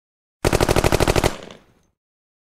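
Machine-gun burst: a rapid string of about a dozen shots lasting under a second, fading out in an echo.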